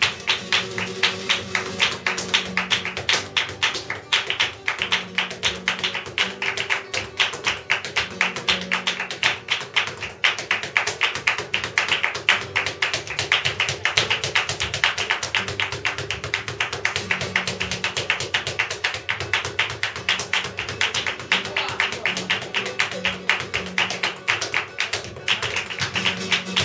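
Live flamenco: a rapid, steady run of percussive taps from the dancer's footwork on the floor and hand-clapping (palmas), over a Spanish guitar.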